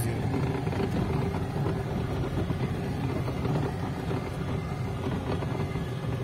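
A car driving over a rough dirt and gravel track, heard from inside the cabin: a steady low engine hum under the rumble of the tyres on the stony ground.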